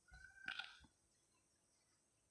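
Near silence: room tone, with one faint, brief sound in the first second, a short tone with a click about half a second in.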